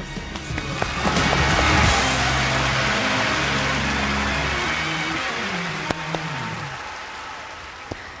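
Applause with music playing under it: the clapping swells about a second in and dies away over several seconds, while the music ends on a falling phrase.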